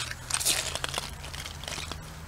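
Crunching and clicking of creek gravel and small stones being handled as a lump of red clay is picked out of the creek bed, a quick run of small crackles that thins out after the first second or so.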